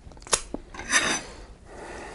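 A kitchen knife being handled against a mango: two sharp clicks, then a short scraping rasp of the blade about a second in, fading to a fainter scrape.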